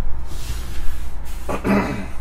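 A man clears his throat once, briefly, about one and a half seconds in, over a steady low hum.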